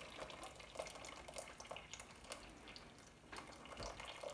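Faint, irregular dripping of hot fruit liquid from a muslin bag of citrus peel and pips, held over the pot, falling back into the marmalade.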